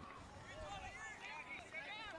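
Faint, distant voices of players and onlookers calling and shouting around a touch football field, in short scattered calls.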